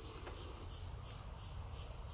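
An insect chirping in a very high-pitched pulse, repeated evenly about three times a second, over a low rumble.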